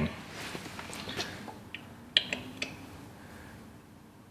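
Faint handling sounds from a hand tap in its T-handle being brought to the bolt hole and set in place: a few light, short clicks, the loudest a little after two seconds in.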